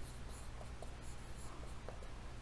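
Faint strokes of a marker writing letters on a whiteboard.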